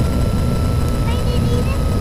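Piper Saratoga's six-cylinder engine at low power in the cabin just after touchdown, a steady low rumble, with a thin steady whine from intercom interference running through it.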